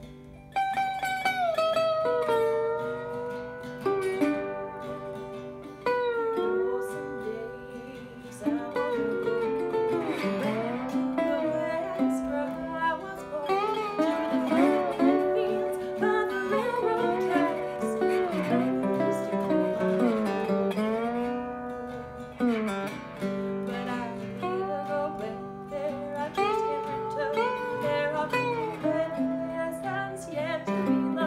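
A metal-bodied resonator guitar played with a slide, with its notes gliding in pitch, alongside a strummed archtop guitar. A woman's singing joins about nine seconds in.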